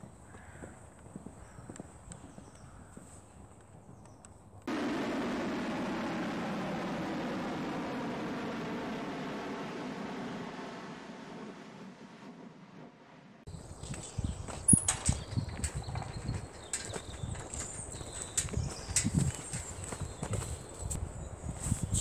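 Faint footsteps on asphalt, then a sudden steady jet airliner cabin roar for about nine seconds, slowly fading. After that, a run of irregular sharp clicks and knocks.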